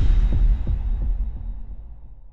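Intro sting sound effect: a deep bass impact hit at the start, its rumble carrying a few low pulsing thuds and fading away over the next couple of seconds.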